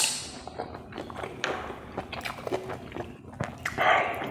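Close-miked chewing of fried pork and rice, with many small wet mouth clicks. Near the end, a denser rustle as fingers work the rice on the plate.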